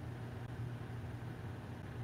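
Quiet room tone: a steady low hum under a faint even hiss.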